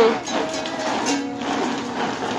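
A child strumming a small toy ukulele, with uneven plucked string chords.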